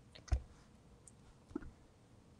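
Two short clicks in a quiet pause. The first, about a third of a second in, is the louder; a fainter second click follows just over a second later.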